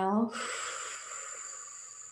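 A long breath, heard as a steady hiss that fades slowly over about two and a half seconds, ending a round of bhastrika (bellows breath) pranayama. It opens with a brief voiced sound.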